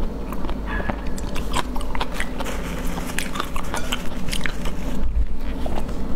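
Close-miked mouth sounds of eating shellfish: sucking the meat out of the shells and chewing, with many small wet clicks of lips and teeth throughout.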